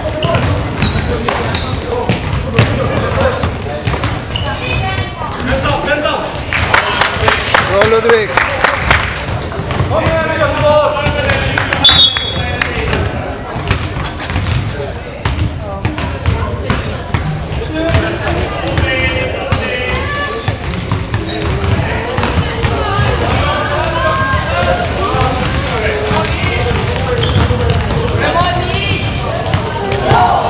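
Basketball bouncing and dribbling on a sports-hall floor during play, many sharp echoing thuds, with players' and spectators' voices calling across the hall and a few short high squeaks.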